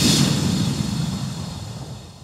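Logo-reveal sound effect: a sudden hit at the start, then a noisy, rushing whoosh with a low rumble that slowly fades out.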